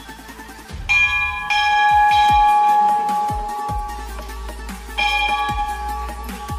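Hanging metal temple bell struck and ringing with long, clear, lingering tones. It is struck about a second in, again just after, and once more near the end, over background music.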